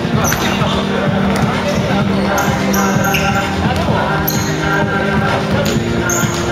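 Basketball bouncing repeatedly on a wooden gym floor, over steady music and voices.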